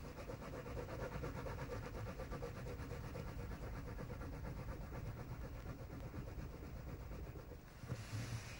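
Wax crayon scribbled rapidly back and forth on paper: a steady run of faint, scratchy strokes as black is laid over a drawing.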